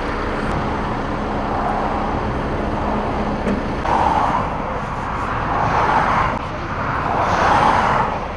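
Motorway traffic going past: a steady low rumble, with three vehicles swishing by one after another in the second half. A steady engine hum sits under the first half.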